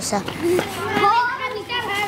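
A group of children's voices chattering and calling over one another, several at once, with no single clear speaker.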